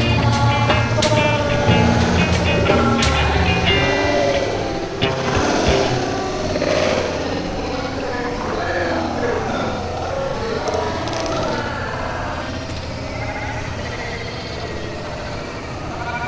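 Background music with a steady bass beat for about the first five seconds, then many overlapping voices chattering: the hubbub of a busy vegetable market.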